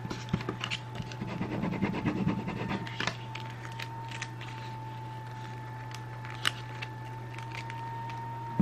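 Crinkling and small clicks of fingers handling a sheet of transfer tape and vinyl cut-outs on a table, busiest in the first three seconds, with a few separate clicks later. A steady hum and a thin steady tone run underneath.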